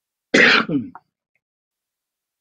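A woman clearing her throat once, a short burst of under a second.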